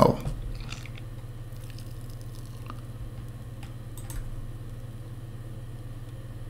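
A steady low hum with a few faint, short clicks scattered through it.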